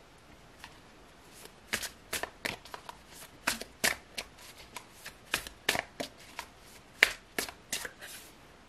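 A deck of tarot cards being shuffled by hand: a string of sharp, irregular card snaps, two or three a second, starting about a second and a half in.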